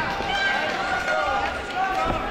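Several voices shouting over one another from around the cage: spectators and cornermen calling out, with no single voice clear.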